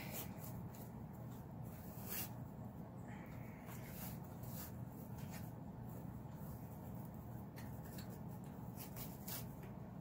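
Faint rustling and scattered soft crackles of a fabric ribbon being handled and tied into a bow, over a steady low hum.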